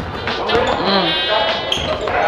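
A basketball being dribbled on a hardwood gym floor, with voices in the gym.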